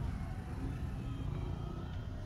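Low, steady rumble of a moving car's engine and tyres heard from inside the cabin.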